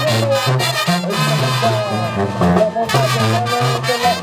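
Upbeat brass band music with a steady beat, a bass line stepping from note to note under a brass melody.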